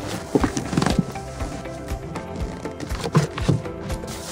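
Background music, with a few dull thuds in the first second and again near the end as a plastic-wrapped furniture piece is dumped out of its cardboard box onto carpet.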